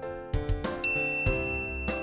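A bright ding sound effect about a second in, its tone ringing on, marking a tick for the correct answer; under it, light background music with a steady beat.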